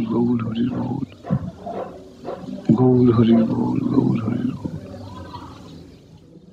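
A man speaking, in two stretches split by a short pause about a second in; the second stretch is louder and fades toward the end.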